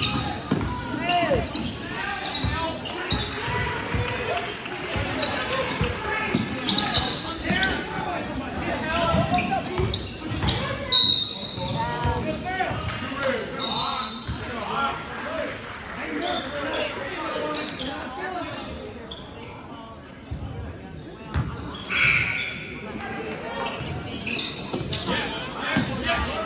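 Basketball game on a gym's hardwood floor: balls bouncing, sneakers squeaking, and players calling out, all echoing in the large hall.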